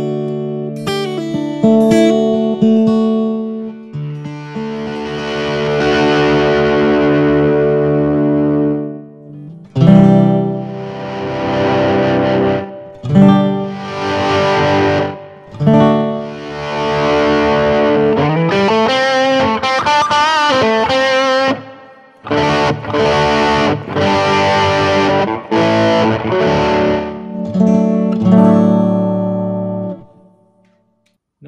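Line 6 Variax guitar strummed in ringing chords through a Helix, its acoustic model fading down as the distorted electric tone from its magnetic pickups is swelled in with the expression pedal, leaving a dead spot in the middle of the blend. The chords stop and start again several times.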